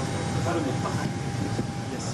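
Steady background noise inside the Airbus A380 prototype's cabin: a low, even roar with a thin constant whine over it, and faint voices underneath.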